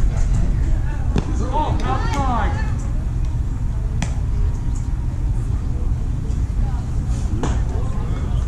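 Shouting voices of players and spectators carrying across a baseball field, loudest about two seconds in, over a steady low rumble. A single sharp knock sounds about halfway through.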